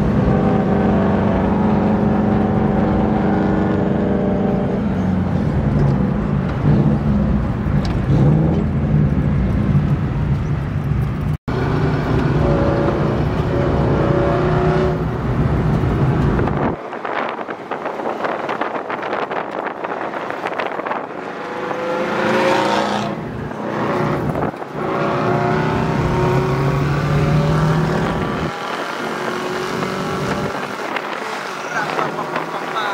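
Rally car's engine heard from inside the cabin while driving in traffic, running with rises and falls in pitch. There is a brief dropout about eleven seconds in, and the deep rumble thins out after about seventeen seconds.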